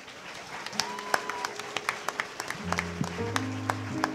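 Scattered hand clapping from a congregation, a few separate claps at a time. About two-thirds of the way through, a keyboard comes in with held low chords.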